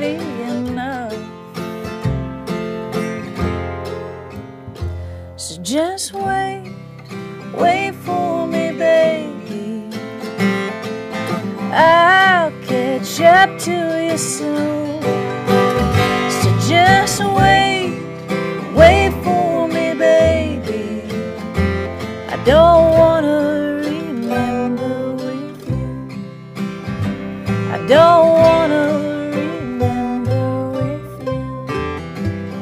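Live acoustic string-band music: strummed acoustic guitar, mandolin and upright bass playing a song, with a voice carrying gliding melody lines over the chords.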